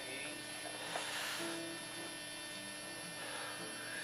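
Steady electrical hum with a stack of buzzing overtones, under a quiet room.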